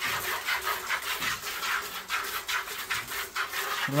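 Hand milking a cow into a bucket: quick, even squirts of milk from the teats hitting the bucket, about five a second.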